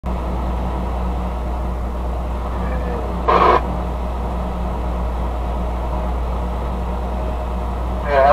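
Steady low drone of a semi truck's engine and road noise, heard from inside the cab while rolling slowly in traffic. About three seconds in there is one short, loud burst.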